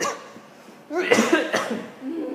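A person coughing close to the microphone: a short cough right at the start, then a louder, longer coughing fit about a second in.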